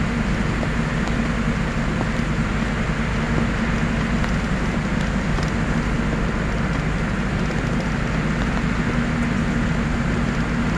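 Engine and road noise inside a vehicle driving on a snowy, slushy highway: a steady low drone under an even hiss from the tyres on the wet road.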